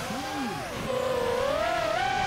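Racing quadcopter's electric motors whining, the pitch dropping about two-thirds of a second in and then climbing slowly again as the throttle changes.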